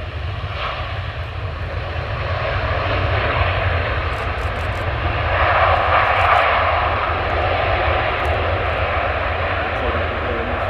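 Jet engines of a Boeing 757-300 running as the airliner rolls along the runway. The steady rush swells to its loudest about six seconds in, over a constant low rumble.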